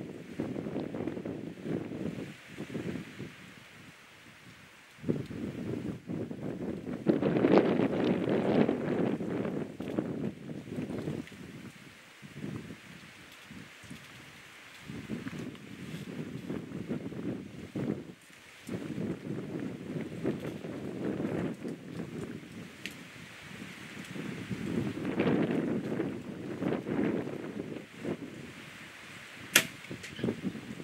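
Wind buffeting the microphone in gusts that swell and fade every few seconds, with a single sharp click near the end.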